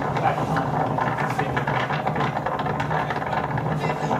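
Steady wind buffeting and rushing on a camera microphone in Antarctic expedition footage, heard through lecture-room speakers, with a low hum under it.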